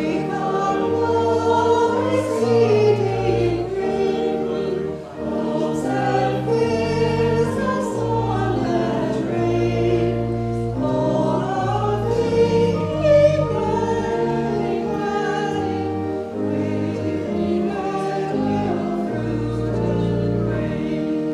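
Church choir singing a slow sacred piece, with long held low notes sounding beneath the voices.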